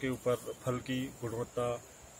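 A man talking, with a steady high-pitched buzz of crickets running underneath.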